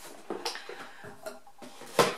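Light knocks and rustles of objects being handled and set down, with a sharper click at the very end.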